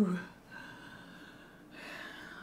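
A woman's drawn-out "ooh" slides down in pitch and ends just after the start. Then comes quiet room tone, with a soft intake of breath near the end.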